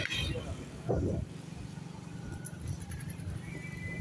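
A vehicle engine runs steadily underneath as a low hum while moving, with a short burst of voice about a second in and a thin steady high tone near the end.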